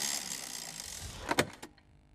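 Sound effect for a TV channel ident: a rush of noise that fades away over about a second and a half, ending in two sharp clicks.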